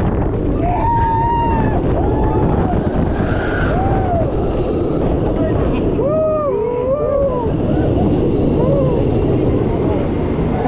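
Wind rushing over a camera mounted on a roller coaster train at speed, a steady heavy buffeting. Riders' shouts and screams rise and fall over it several times, with a cluster about six seconds in.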